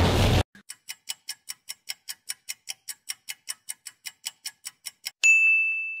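Quiz countdown timer sound effect: a clock ticking at about five ticks a second for some four and a half seconds, then a single bright ding about five seconds in, marking the answer reveal.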